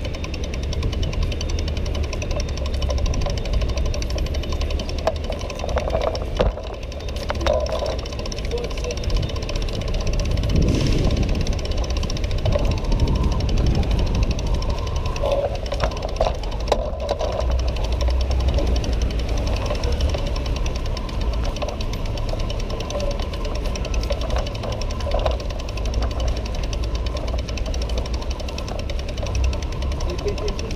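A bicycle being pushed along stone and cobbled pavement: a steady low rumble with a fast, even rattle from the rolling wheels and the bike-mounted camera. Street noise and passing voices sit underneath.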